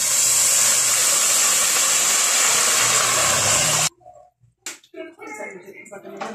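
Blended tomato and chile sauce poured into hot oil with frying onion, sizzling in a loud, steady hiss that cuts off suddenly about four seconds in. A few faint clicks and knocks follow.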